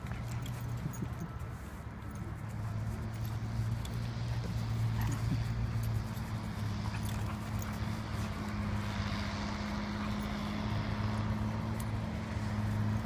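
A steady low mechanical hum, like an engine or machine running, with scattered light clicks and scuffs as two dogs wrestle and play.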